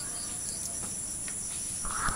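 Steady high-pitched chorus of tropical insects, with a faint repeating pulsed note under it. A brief mid-pitched sound comes in near the end.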